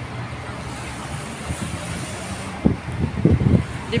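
Steady traffic noise from a busy city street, with a few gusts of wind buffeting the microphone about three seconds in.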